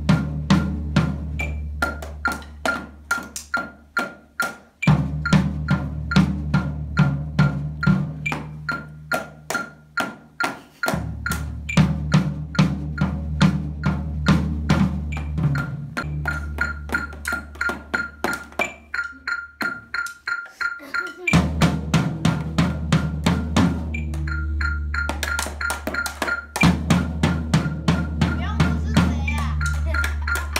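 Drumsticks striking drum practice pads and a drum in a quick, steady stream of hits, played along to a backing track with a sustained bass line.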